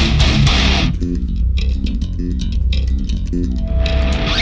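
Death metal: the full band with drums and distorted electric guitars, then about a second in the cymbals and highs drop away, leaving a stop-start riff of short chugged notes on distorted guitar and bass guitar. A single held guitar note comes in near the end.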